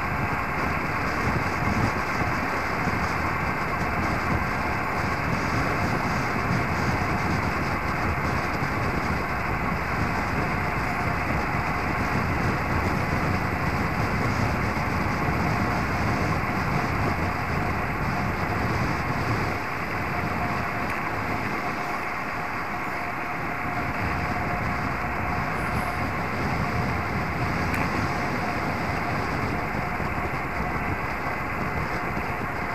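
Steady wind noise on a bike-mounted camera's microphone at descending speed, mixed with the hum of road-bike tyres on asphalt. It eases slightly for a few seconds past the middle.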